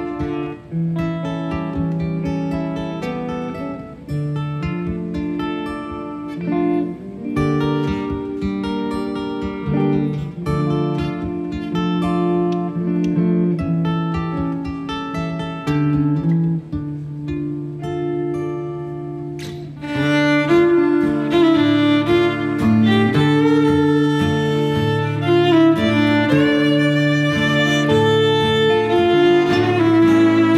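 Live acoustic band music: an acoustic guitar picking a slow melody, with a fiddle joining in about twenty seconds in and the sound growing fuller and louder.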